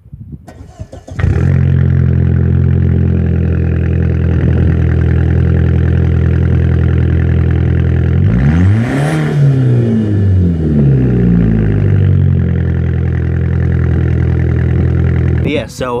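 Cold start of a 2004 Volkswagen Passat with a straight-piped exhaust (resonator and muffler deleted), heard at the tailpipe. After a brief crank the engine catches about a second in and settles into a loud, steady idle. Around eight seconds in one rev rises and falls, and the engine settles back to idle over the next few seconds, sounding "mean" and "aggressive".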